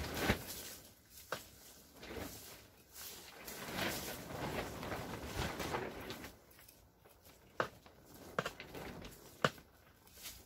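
Small hand trowel digging and scraping through dry, dusty potting soil and dried roots in a plastic pot, with a longer rustling scrape in the middle and a few short sharp knocks.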